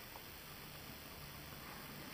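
Faint room tone: a low, steady background hiss with no distinct sound.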